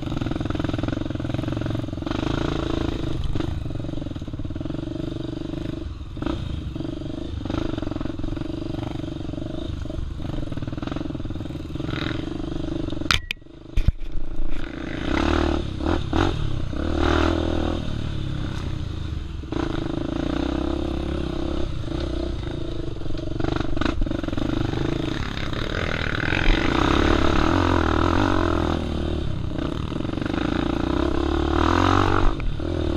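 Off-road motorcycle engine running at low trail speed on the rider's own bike, with the bike clattering over rocks and roots. About halfway through the sound briefly drops away amid a few sharp knocks, then the engine picks up again.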